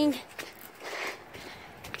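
Faint footsteps and rustling, loudest about a second in, as people set off walking with the phone in hand.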